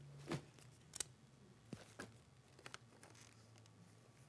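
Faint rustling and a handful of scattered clicks from small objects being handled, as someone rummages for something, over a low steady hum.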